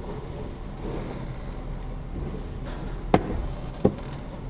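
Sewer inspection camera rig with its push cable being drawn back: a steady low hum, then two sharp knocks near the end, about three-quarters of a second apart.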